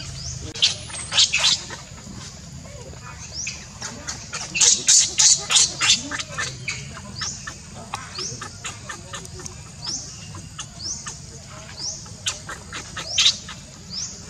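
Infant macaque crying with high-pitched squeaks and squeals in bursts, the loudest run about five seconds in and another near the end: a hungry baby begging for milk. Behind it a short rising call repeats every couple of seconds.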